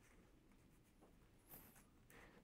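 Near silence: quiet room tone, with a faint short rustle of paper notes being handled about one and a half seconds in.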